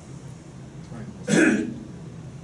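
A person coughs once, a short throat-clearing cough about a second and a half in, over a steady low room hum.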